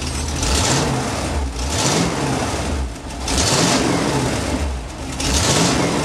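1977 Chevy pickup's carbureted engine running, blipped up and back about four times, each rise bringing a burst of hiss. The engine has an exhaust leak that is not yet fixed.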